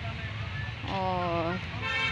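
A vehicle horn sounds once, a flat tone lasting under a second, about a second in, over a steady low rumble of road traffic.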